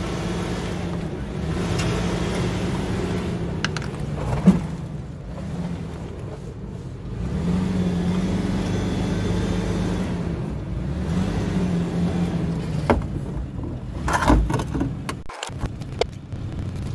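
2003 Nissan Pathfinder's 3.5-litre V6 running at low revs as the SUV crawls over rocks, the throttle picking up for a few seconds in the middle. A few sharp knocks, a little under halfway and again near the end, with a short clatter just before the end.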